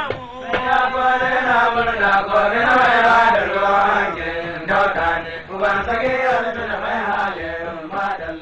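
Hausa praise singing: a voice chanting in long held lines, the notes sustained and bending slowly in pitch.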